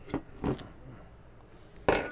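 Wire cage on a beer bottle's cork being worked loose: a couple of faint metallic clicks, then a sharp clink near the end as the cage breaks off completely.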